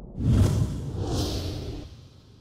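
A cinematic whoosh sound effect with a deep low boom underneath, hitting suddenly just after the start, swelling again in the highs about a second in, then fading away near the end.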